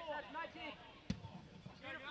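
One sharp thud about a second in: a football being struck by a boot.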